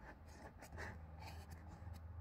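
Fingers poking and rubbing dry plaster of paris powder in a plastic tub: faint, scattered scratching sounds over a low steady hum.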